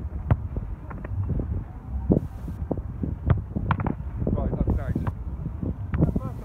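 Wind rumbling on the microphone, with several sharp knocks of a football being struck and saved during a goalkeeper shot-stopping drill; faint voices in the background.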